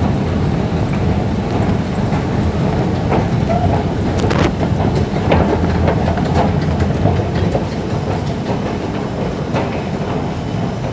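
Steady low rumble of an MRT train in an underground station, with a few sharp metallic clicks and knocks about three to five seconds in.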